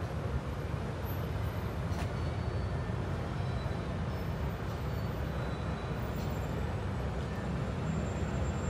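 Steady low rumble of city road traffic, with a faint click about two seconds in.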